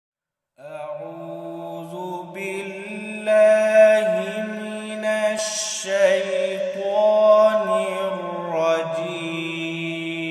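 A solo male voice chanting Quranic recitation (tilawa) in long, drawn-out melodic phrases with short breaks between them.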